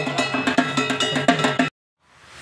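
Fast percussion: a rapid run of drum beats mixed with ringing metal strokes. It cuts off abruptly shortly before the end.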